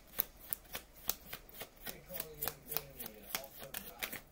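A deck of cards shuffled overhand in the hands: a steady run of sharp card slaps, about three or four a second.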